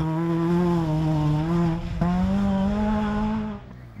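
Engine of a Renault Mégane-bodied off-road rally car running hard at high revs. The note holds steady, steps up in pitch about halfway, then cuts off shortly before the end.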